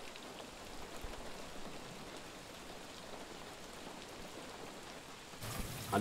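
Steady rain falling, an even hiss without distinct drops standing out. About five seconds in the sound shifts as the scene changes.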